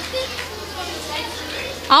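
Children's chatter and murmuring voices in a hall, with a low steady hum underneath; a loud announcer's voice starts right at the end.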